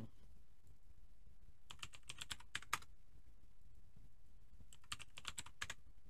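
Typing on a computer keyboard: two short bursts of keystrokes, one about two seconds in and another near the end, with quiet room tone between them.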